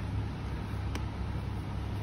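Steady low rumble of shop background noise, with a single short click about a second in.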